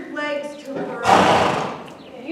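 A horse snorting, a short noisy blast of air through its nostrils lasting under a second, about halfway in, after a brief voice.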